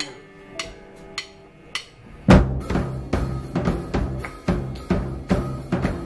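A rock trio's drummer counts in with four sharp clicks, then about two seconds in the full band of drum kit, bass guitar and electric guitar crashes in loudly and plays on with a steady beat.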